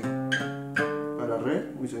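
Acoustic guitar picking a short phrase of three or four notes about half a second apart, leading into a C chord, followed by a brief spoken word.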